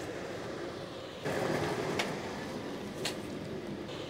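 Handling noise as a plastic storage box is set down and shifted on a metal hand cart: a scraping, rattling noise that grows louder about a second in, with two sharp clicks.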